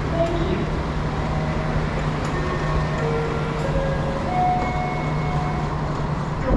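Steady low machinery hum and noise of a high-speed rail station concourse, with faint distant voices.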